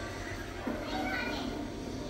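Children's voices and indistinct chatter.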